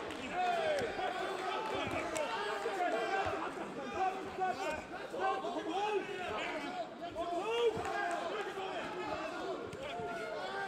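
An arena crowd of many overlapping voices shouting and calling out during a kickboxing bout.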